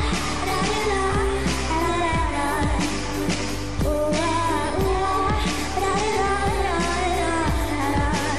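Pop song with a sung melody over a steady bass and a regular drum beat.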